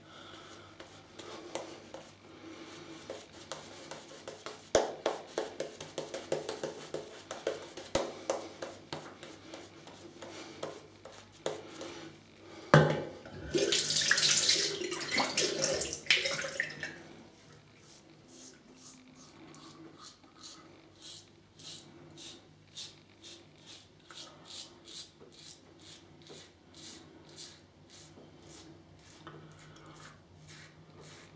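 Wet shave at a bathroom sink: hands and water splashing, with a tap running for a few seconds about halfway through. Then a steady run of short, crisp scraping strokes, about two a second, as an Edwin Jagger 3ONE6L stainless steel double-edge safety razor cuts through lathered stubble.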